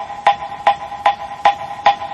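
Moktak (Korean Buddhist wooden fish) struck in a steady rhythm, about two and a half strokes a second, each stroke ringing briefly, keeping time for sutra chanting.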